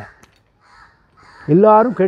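A man's voice: a word trails off, then about a second and a half of pause with only a faint click and a breath, then a loud, drawn-out vowel.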